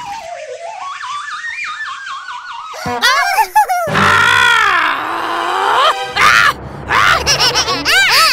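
Cartoon sound effects: a wobbling whistle that dips and then climbs in pitch for about three seconds, then a quick rattling burst, followed by a cartoon character's falling-and-rising wailing cry and more short squeaky vocal sounds.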